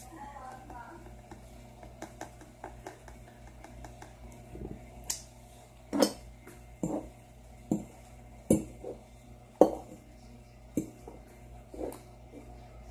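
Hard objects clicking and knocking on a tabletop, a scattered run of sharp knocks with the loudest ones coming about a second apart from the middle of the stretch on.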